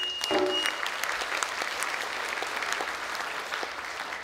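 Audience applauding in a hall, a steady patter of many hands. In the first second the last plucked-string notes of the traditional entrance music die away under it.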